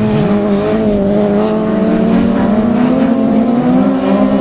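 Class 8 autograss racing buggies' engines running hard on a dirt track, several engine notes overlapping, their pitch sliding up and down as the cars race past.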